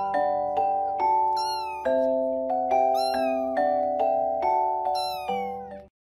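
Kitten mewing: high, thin calls that fall in pitch, repeated about every second and a half, over background music of evenly struck notes that each fade away.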